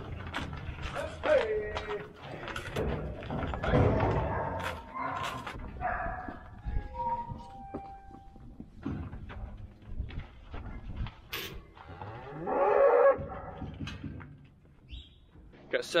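Cattle mooing as cow-calf pairs are driven through steel pens, with a loud call near the end. Scattered knocks and clatters run through.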